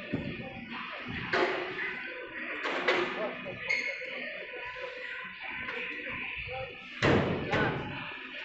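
Several heavy knocks and thumps as a forklift shifts and sets down steel container modules, the loudest pair near the end. Background music and voices run underneath throughout.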